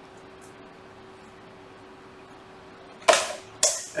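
A faint steady hum, then about three seconds in, two loud, sharp clattering knocks half a second apart as a flexible 3D-printer build plate and its printed plastic parts are handled.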